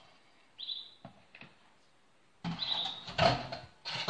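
A plastic measuring jug and metal kitchenware being handled and set down on a counter: a few knocks, then a louder patch of clatter near the end. Short, high, chirp-like squeaks come with the handling.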